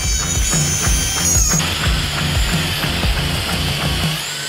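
Background music with a steady beat, over the high whine of a trim router cutting circles in half-inch plywood.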